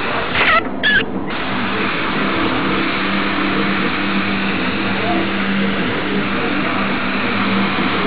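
Badger airbrush spraying paint: a steady hiss of air and paint, cut off twice briefly about half a second to a second in as the trigger is released, over a steady low hum.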